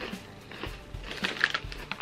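Crunchy potato chips being chewed: a few short, faint crunches over quiet background music.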